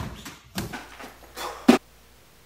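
Kicks and strikes landing on free-standing punching bags: a series of dull thuds, the loudest near the end, after which the sound cuts off abruptly.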